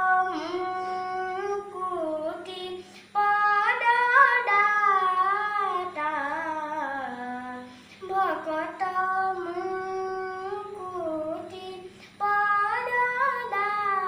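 A young boy singing a song unaccompanied into a handheld microphone. He sings held, gliding notes in phrases of about four seconds, with short breaths between them.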